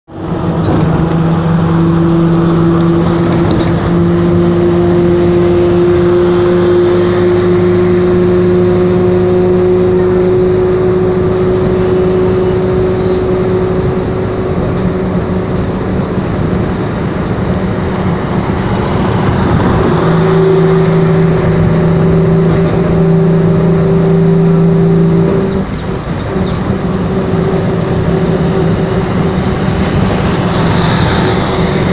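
Road vehicle's engine droning at cruising speed over steady road noise. The drone rises slowly in pitch over the first dozen seconds, fades about 13 seconds in, and comes back between about 20 and 25 seconds in.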